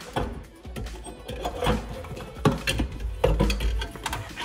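Clicks and knocks of a car's metal-cased ECU and its wiring-harness plug being handled and unplugged, several sharp strikes scattered through, over background music.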